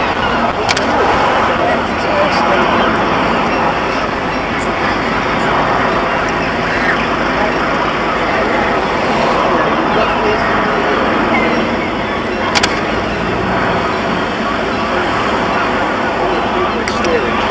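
Bulleid Battle of Britain class light Pacific 34067 Tangmere working its train across the harbour viaduct, heard across the water as a steady, even noise with no clear beat.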